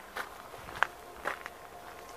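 Footsteps on gravel: three steps, the middle one a sharp click a little under a second in.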